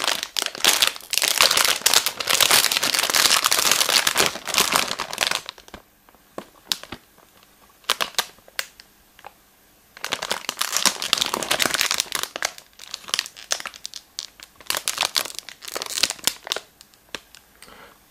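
Plastic film wrapper of a biscuit packet crinkling as it is handled and turned in the hands. It crinkles for about five seconds, falls quiet for a few seconds apart from a few small clicks, then crinkles again in shorter bursts.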